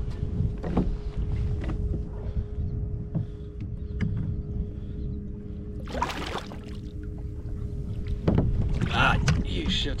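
Water sloshing against a kayak hull with wind on the microphone and a steady faint hum, as a hooked kingfish is brought alongside and gaffed. A sharp splash comes about six seconds in, and louder splashing and movement follow near the end.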